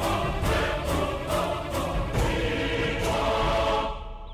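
Dramatic background score with choir voices over a steady beat, cutting off abruptly at the very end.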